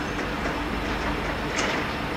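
EMD diesel freight locomotives, a GP38 leading, running as they approach: a steady engine drone with a low rumble and a faint steady hum.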